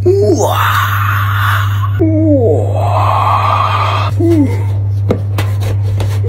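Moaning, voice-like calls that fall in pitch, four in all about two seconds apart, each trailed by a hiss, over a steady low hum; a few sharp clicks come in the second half.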